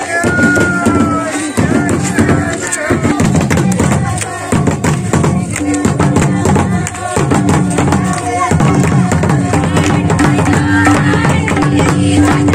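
Santal folk dance music: a two-headed barrel hand drum (madal) beaten by hand in a fast, steady rhythm, with voices and singing from the crowd over it.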